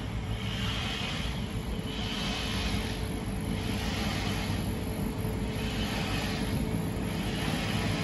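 Outdoor ambience: a steady low rumble, as of wind on the microphone or distant traffic, with a high hiss that swells and fades about once a second.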